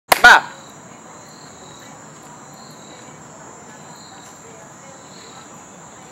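Night insects, such as crickets, chirping steadily: a continuous high trill with softer chirps repeating about once a second. A brief loud burst sounds right at the start.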